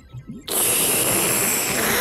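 Cartoon sucking or slurping sound effect, like a vacuum cleaner, as a flood of jelly is sucked up. It is a steady, noisy hiss that starts about half a second in.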